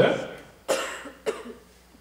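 A person coughing twice close to the microphone: a sharp, loud cough and, about half a second later, a smaller one.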